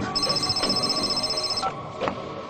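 A mobile phone ringing with a high, fast electronic trill: one ring about a second and a half long that stops shortly before the end.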